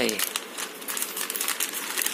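A newspaper-wrapped parcel sealed in clear tape crinkling under a hand as it is rubbed and pressed, a dense run of small crackles. A drawn-out voice trails off right at the start.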